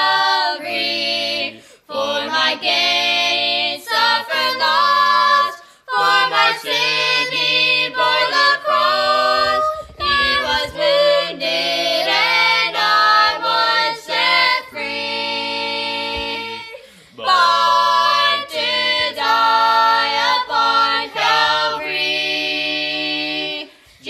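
An unaccompanied vocal quartet of young voices (a young man, a boy and two girls) singing a gospel song together, in phrases broken by short pauses for breath.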